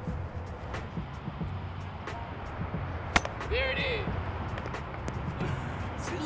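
A baseball bat hits a ball once: a single sharp crack about three seconds in, followed at once by a short excited shout.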